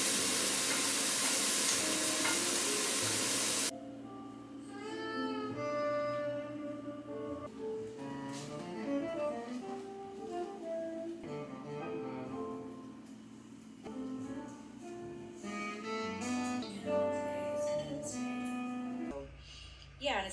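Food sizzling in a frying pan on a gas stove, a loud steady hiss that cuts off suddenly about four seconds in. Quieter instrumental background music with melodic string-like notes follows for the rest.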